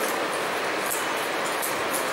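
A steady, even rushing noise with no speech, overlaid by short, faint high-pitched hissing flecks.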